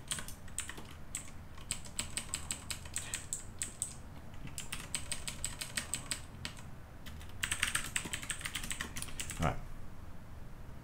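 Typing on a computer keyboard: quick runs of keystrokes in several bursts, with short pauses between them.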